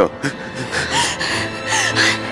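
Short gasping breaths and brief whimpering vocal sounds from a distressed person, over background music with long held notes.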